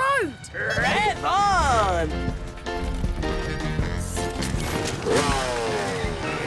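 A cartoon character's wordless, wavering vocal cry that rises and falls in the first two seconds, over a low rumble. Background music runs under it and carries on alone afterwards.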